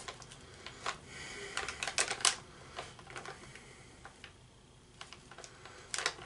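Faint crinkling and light clicking of a plastic snack pouch being handled and held up to the face, in scattered irregular crackles.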